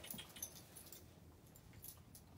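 Faint, sparse ticks and rustles of a puppy moving about on a wooden floor, with a light jingle from its leash.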